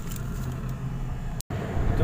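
Steady low rumble of a car's engine and road noise heard from inside the cabin, cut off by a brief dropout about one and a half seconds in before resuming.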